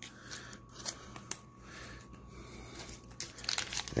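Hands handling a stack of trading cards, then the crinkling foil wrapper of an Upper Deck fat pack: a scatter of short crackles and clicks, busier near the end.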